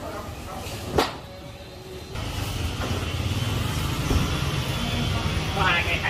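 A single sharp knock about a second in, then a steady low rumble like a motor vehicle running from about two seconds on.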